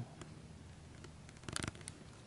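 Faint room tone with a brief cluster of small clicks about one and a half seconds in, and one more click just after.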